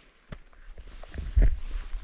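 Irregular crunching and knocking of skis and poles moving through snow, with a heavy low thump on the microphone about one and a half seconds in.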